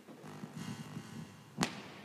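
A single sharp knock about one and a half seconds in, over a faint low background.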